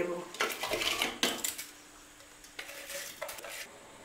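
A metal bowl clinks and scrapes against the rim of a metal pot as washed rice is tipped into boiling water. The clatter comes in two spells, one in the first second or so and another about three seconds in.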